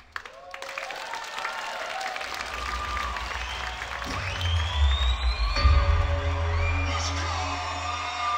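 K-pop remix dance music with singing. It drops out almost to nothing at the very start, then builds back with a rising sweep, and the heavy bass returns about four seconds in.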